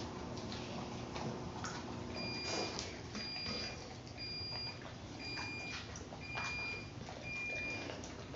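A dog crunching and chewing a raw duck neck, with irregular crunches and clicks throughout. From about two seconds in, an electronic beeper sounds six times, roughly once a second, each beep about half a second long.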